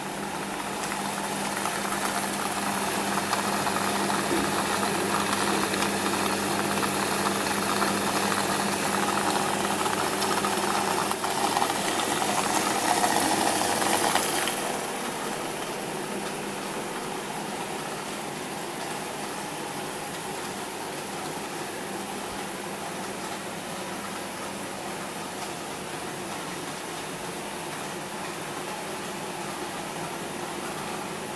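Steady hum and hiss of aquarium aeration: an air pump running and air stones bubbling. It is louder for the first half and drops to a quieter steady level about halfway through.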